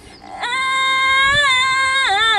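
A single high voice from an a cappella student choir comes in about half a second in and holds one long sung note, lifting slightly in pitch partway through.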